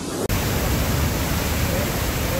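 Floodwater discharging through the open spillway of the Kadam dam, a loud, steady rush of water. It comes in abruptly about a quarter second in, after a brief rising swoosh.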